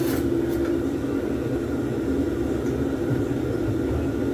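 A steady low mechanical hum runs throughout at an even level, with a brief light clink of a spoon against a saucer right at the start.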